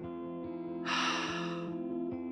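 A woman breathing out audibly through her mouth for about a second, starting about a second in, over soft ambient meditation music with steady held tones.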